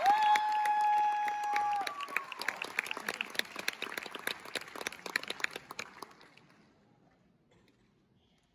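Audience cheering and applauding at the end of an electric guitar performance, with a long high held tone over the first two seconds. The clapping thins out and fades away over about six seconds.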